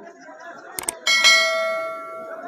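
Subscribe-button overlay sound effect: a couple of quick mouse clicks a little under a second in, then a bright bell ding about a second in that rings out slowly, over faint crowd chatter.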